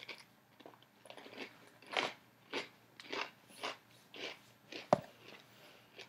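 Close-up chewing of a crispy cornmeal-breaded fried chicken tender, crunching at about two chews a second. A single sharp click comes near the end.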